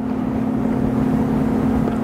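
Steady background noise with a constant low hum running under the room, with no distinct events.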